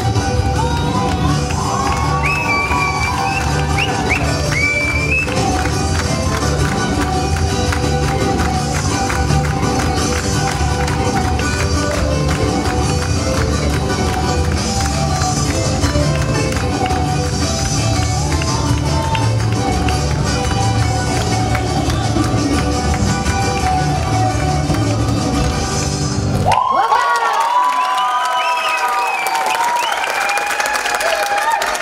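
Greek dance music with a steady beat plays loudly and cuts off suddenly about 26 seconds in, and the audience breaks into cheering and applause.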